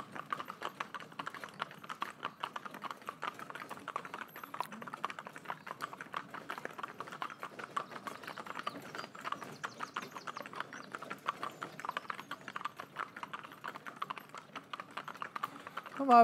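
Hooves of three Shetland ponies walking on a tarmac road: a steady, continuous clip-clop of many overlapping hoof-falls.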